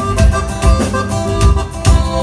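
Live band playing an instrumental passage without vocals: accordion holding notes over acoustic guitar and bass, with the drum kit keeping a steady beat.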